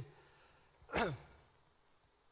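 A man's single short sigh about a second in: a breathy exhale with a little voice in it, falling in pitch.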